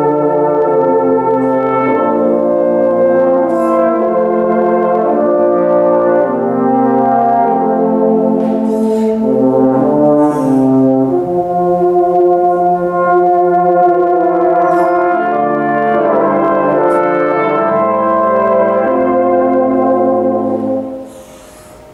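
A saxhorn quartet of tenor horns and a baritone horn playing a slow spiritual in sustained four-part chords, the notes changing every second or two.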